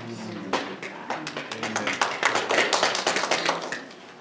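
A small group of people clapping, the separate claps of a short round of applause, with some voices among it.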